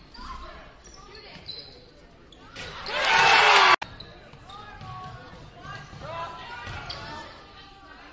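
Basketball game sounds in a gymnasium: a ball bouncing on the hardwood while players and spectators call out. About three seconds in there is a loud burst of crowd cheering, which cuts off suddenly.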